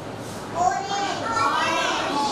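Young children's voices chattering and calling out.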